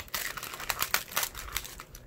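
A clear plastic packet of paper die cuts crinkling and rustling as it is handled and pushed against a cardstock pocket: a quick run of irregular crackles.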